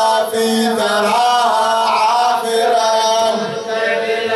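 A man's voice chanting a mournful Arabic elegy for Husayn into a microphone, in long held notes that waver and bend, with a brief dip about half a second in and near the end.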